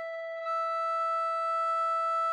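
Recorder holding one long, steady F note, growing a little louder and brighter about half a second in.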